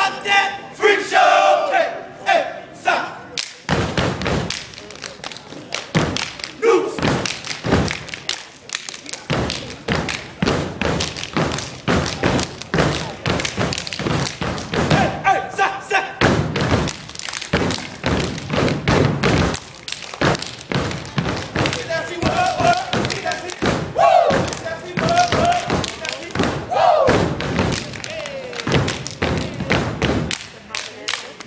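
Step team stepping: rapid rhythmic stomps and hand claps and slaps from a line of performers. It opens with a shouted group chant, and more chanting comes later over the beats.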